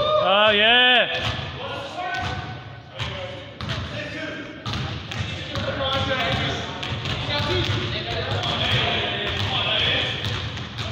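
A basketball bouncing on a gym floor during a pickup game, amid players' shouting and chatter; a loud drawn-out shout in the first second is the loudest sound.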